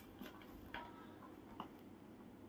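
A few faint, light taps as paper-cone and paper-tube puppets are set down upright on a tabletop, with room tone between them.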